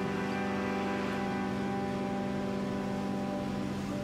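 Closing chord of a live tango, held steadily on the bandoneon and slowly fading.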